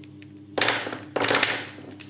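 Handfuls of plastic felt-tip brush pens dropped onto a paper sheet on a table, clattering twice: about half a second in and again about a second in.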